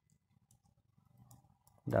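A few faint computer mouse clicks, spaced out and sharp.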